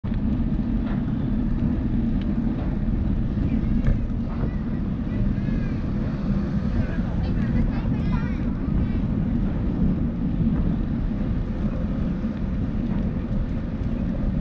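Steady low rumble of wind on the microphone and tyres on asphalt from a bicycle ride, picked up by a handlebar-mounted camera.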